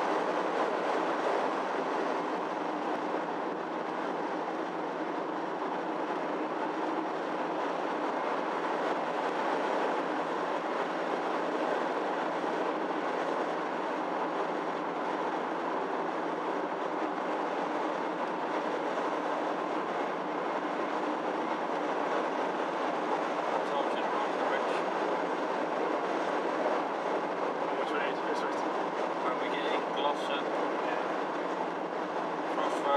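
Steady in-cabin tyre and engine noise of a car with a 1.9 diesel engine cruising along an open road, the level unchanging throughout.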